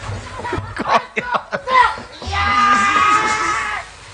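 Shouting voices punctuated by several sharp knocks, then a long, steady, high-pitched scream lasting about a second and a half.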